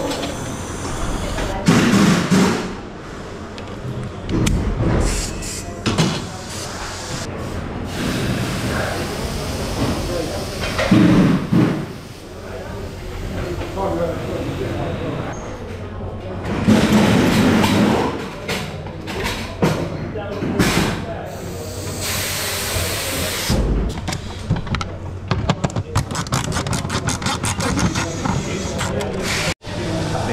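Indistinct voices in a busy workshop, with repeated metallic clanks and knocks as a steel lifting frame is handled and fitted.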